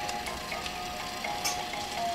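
A simple electronic tune of plain single notes playing from a baby bouncer's musical toy bar, with a few light clicks from the toy pieces.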